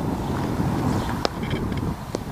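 Wind buffeting the microphone, with a single light click about a second in.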